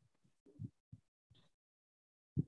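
Near silence broken by five or six brief, faint, low thumps, each cut in and out abruptly as the call's audio gate opens and closes.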